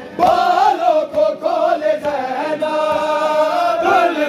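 A group of men chanting a noha, a Shia lament sung in Urdu, in unison without instruments. They hold long, drawn-out notes whose pitch wavers, with a brief break a little over a second in.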